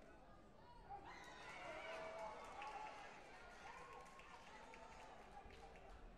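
Faint voices calling in a large sports hall, with a few light clicks.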